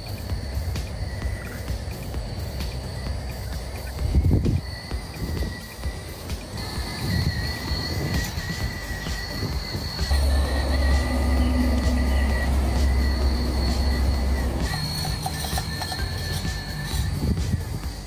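Small electric motor of a homemade drink-can remote-control helicopter spinning its rotor with a steady high whine, and a thump about four seconds in.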